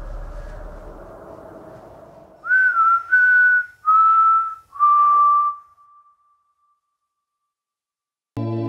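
A man whistling four notes that step downward in pitch, the last one held and fading away.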